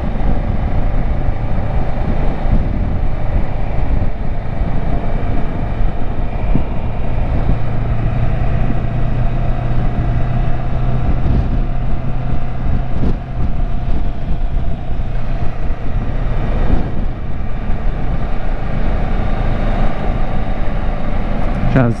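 Kawasaki Versys 650 parallel-twin engine running steadily as the motorcycle climbs a winding hill road, heard from the rider's seat with wind buffeting the microphone. A steadier engine drone stands out through the middle stretch.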